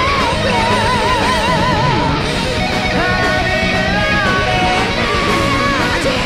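Heavy metal band playing live: distorted electric guitar, bass and drums. A high lead note wavers in wide vibrato for the first two seconds, and long held notes follow from about halfway through.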